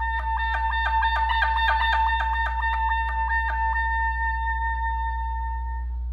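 Solo clarinet playing a held high note that is broken by quick dips to lower notes, about four a second. It then settles into one long held note that fades away near the end.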